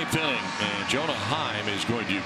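A man's voice talking, as in broadcast play-by-play commentary, over steady background noise, with a couple of short sharp clicks.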